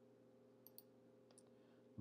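Near silence over a low steady hum, with three faint computer mouse clicks, two close together a little past half a second and one more past the middle, as a browser tab is switched.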